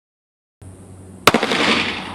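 A single shot from an FN Five-seveN pistol firing 5.7x28mm Elite Ammunition ProtecTOR III: one sharp, loud crack a little over a second in, followed by about a second of noisy ringing tail over a faint steady hum.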